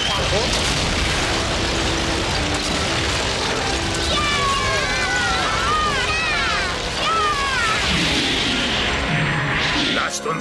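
Cartoon rockslide sound effect: a dense, steady rumble of tumbling boulders. High, mostly falling shrieks cut through it from about four to seven and a half seconds in.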